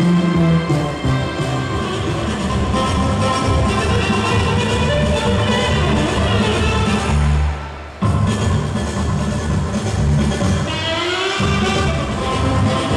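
Instrumental music playing, dense and steady, that dips sharply and cuts straight back in about eight seconds in, with a rising sweep near the end.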